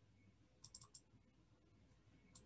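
Near silence with a quick run of about four faint computer-mouse clicks about half a second in, the clicks that scroll down a table of query results.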